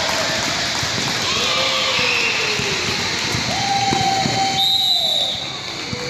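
Basketball game in a large gym: a ball bouncing on the court, sneakers squeaking and spectators' voices, with a short referee's whistle blast about five seconds in.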